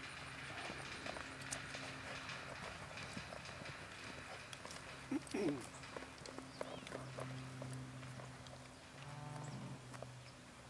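A ridden horse's hooves walking on packed arena dirt, giving faint scattered hoofbeats. About five seconds in there is one short, louder call that rises and falls in pitch, and a steady low hum runs underneath.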